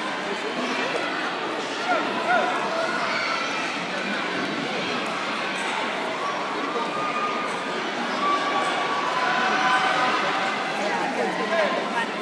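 Crowd chatter: many voices talking at once, none standing out, as a steady background hubbub.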